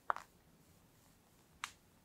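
Metal palette knife smoothing whipped cream across the top of a sponge cake: two short, crisp scraping strokes, one just after the start and one near the end.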